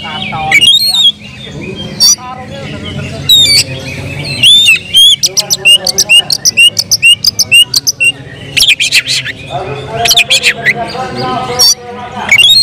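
Oriental magpie-robin (kacer) singing loudly: rising whistled notes, then a fast run of sharp repeated notes, about four a second, through the middle, and a burst of rapid high chatter about nine seconds in.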